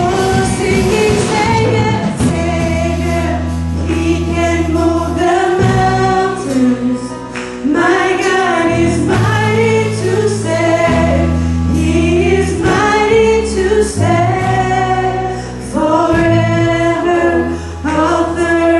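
Live gospel praise-and-worship music: a woman leads the singing into a microphone over a band of electric guitar, drum kit and keyboard. Held sung lines ride over sustained low chords.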